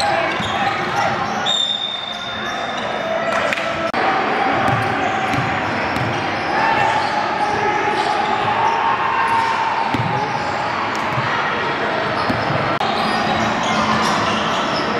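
Live sound of an indoor basketball game: a basketball bouncing on the hardwood court in repeated sharp knocks, over a steady mix of players' and onlookers' voices echoing around the gym.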